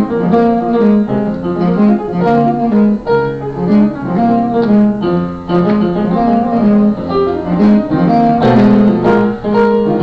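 Live jazz: a saxophone playing a continuous melodic line of held and moving notes, with piano accompaniment.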